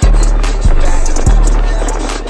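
Trap instrumental beat with a deep 808 bass struck three times, about two-thirds of a second apart, with hi-hat ticks above.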